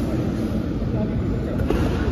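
Steady low rumble of background noise with indistinct voices, and a faint knock near the end.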